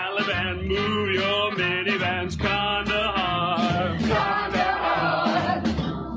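A group of men and women singing a Broadway-style show tune together over musical accompaniment.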